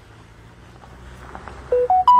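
Faint background hiss, then near the end three short electronic beeps, each higher in pitch than the last.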